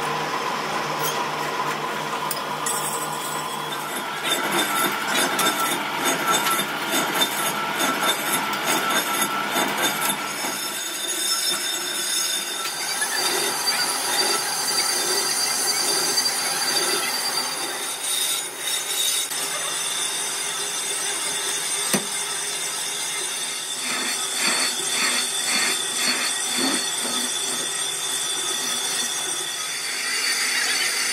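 Metal lathe turning a cast-iron truck brake drum, a single-point tool cutting its inner braking surface with a steady, high-pitched ringing whine from the cut. A single sharp knock comes about two-thirds of the way through.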